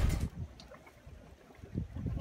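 Music cutting off at the start, then a faint low rumble of wind and sea water.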